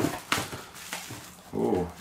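Handling noise as a shrink-wrapped pack of firecrackers is lifted out of a cardboard box: a sharp crinkle or knock near the start, then soft rustling. Near the end comes a short hesitant hum from the man.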